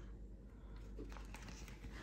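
Faint rustling of paper banknotes and a clear plastic binder envelope being handled, with a few soft ticks.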